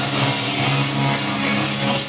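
A live rock band playing loudly in an instrumental passage: electric guitars, bass and drum kit, with sustained low notes.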